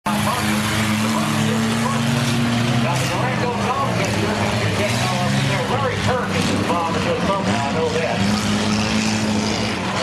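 Several dirt-track race car engines running steadily at low revs.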